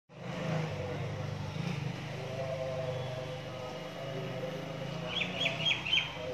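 Outdoor ambience with a steady low hum of traffic or an idling engine, and a bird chirping four times in quick succession near the end.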